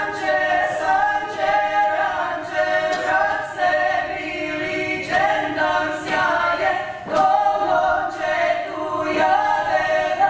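A women's vocal ensemble singing a cappella, several voices in harmony holding and moving between sustained notes.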